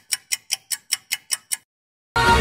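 Clock-like ticking sound effect, about five quick high ticks a second, stopping about a second and a half in: a quiz countdown timer running down before the answer is revealed.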